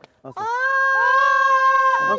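A man's voice singing one long, high, steady 'aaa' note in the southern Saudi 'la la la' singing style, starting about half a second in after a brief pause.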